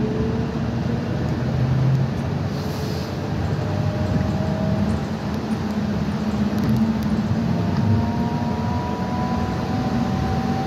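Shuttle bus running, heard inside the cabin: steady engine and road rumble, with thin whines that slowly rise in pitch.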